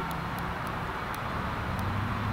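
Steady low hum of background road traffic, with a few faint, scattered high ticks.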